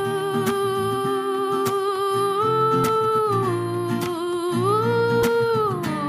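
Female singer holding long, drawn-out notes over a strummed acoustic guitar. The melody steps up and back down twice.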